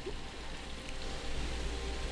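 Steady soft background hiss with a low rumble underneath, growing slightly louder: outdoor ambient noise on the microphone between lines of speech.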